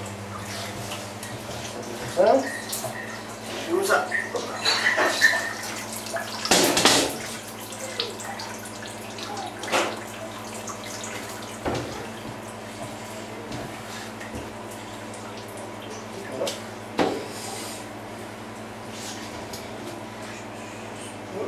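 Whey splashing and dripping while fresh sheep's-milk curd is squeezed by hand in plastic cheese moulds and a drained cheese is lifted out, with wet handling noises. A few short sharp knocks are heard, and a steady low hum runs underneath.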